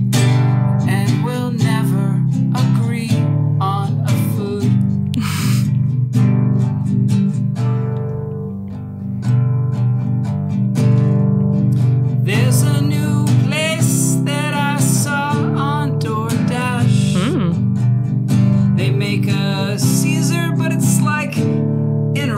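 Acoustic guitar strummed in chords with a man singing over it, the voice dropping out for a moment near the middle.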